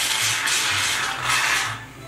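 Aerosol can of shaving cream spraying foam into a waffle cone: a steady hiss that fades out shortly before the end.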